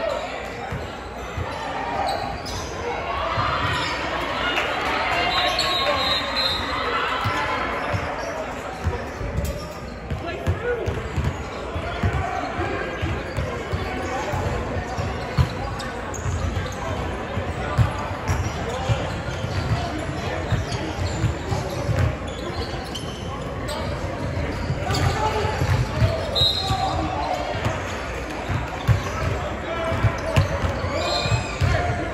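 Basketballs bouncing on a hardwood gym floor, repeated thuds that come thicker in the second half, under the echoing chatter and calls of players and spectators in a large hall.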